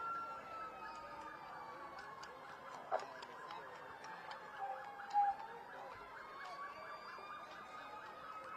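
A distant siren wailing slowly: its pitch slides down over about four seconds and climbs back up again, over faint street noise. A brief sharp knock comes about three seconds in.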